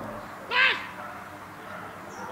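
A dog gives a single short, high-pitched bark about half a second in, rising and falling in pitch.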